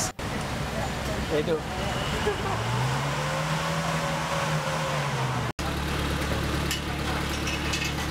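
Car engine idling, revved up once about three seconds in and let fall back to idle, as for a tailpipe exhaust emission test.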